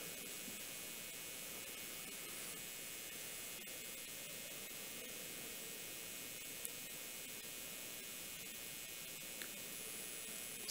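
Steady faint hiss of background noise with a low hum, broken only by a faint tick about six and a half seconds in and another near the end.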